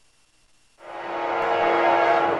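Near silence, then under a second in a CSX GE CW44AC freight locomotive's air horn starts abruptly and swells into a steady chord of several notes.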